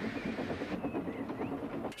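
Steam locomotive sound effect: an engine puffing steadily along with the clatter of its wheels on the rails.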